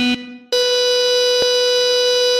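Synthesizer tones opening a song: a lower buzzy note stops about half a second in, and a higher, bright note follows and is held steady, with a faint click partway through.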